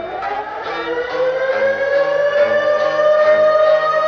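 An air-raid-style siren winds up: one pitched tone rises for about two seconds, then holds steady and grows louder, over a steady music beat.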